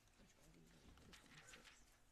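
Near silence: faint room tone with a few soft clicks and rustles.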